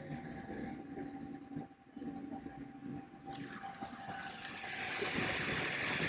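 Phrozen Arco 3D printer running, with a steady thin whine over low fan noise. A rushing noise grows louder through the second half.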